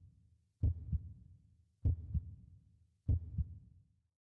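Heartbeat sound effect: slow, even lub-dub double thumps, three beats a little over a second apart.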